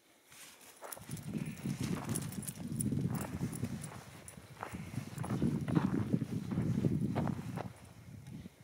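Footsteps crunching on dry pine-needle forest floor: two stretches of steady walking, starting about a second in, easing off around the middle, and stopping just before the end.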